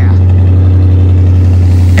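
Dodge Charger SRT8's 6.1-litre Hemi V8 idling at the exhaust tips: a loud, steady, deep drone that holds one even pitch.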